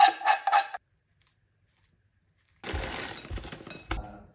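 A metal spoon knocking and scraping against a saucepan in a few quick ringing clinks as porridge is scooped out into a bowl. After a pause, frozen blueberries rattle out of a plastic bag onto the porridge in the bowl.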